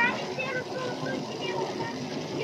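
Children's high voices calling out over steady outdoor background noise, loudest at the very start.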